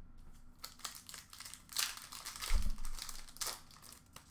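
Foil wrapper of a hockey card pack crinkling and being torn open by hand, in a series of crackly rustles, with a low bump about two and a half seconds in.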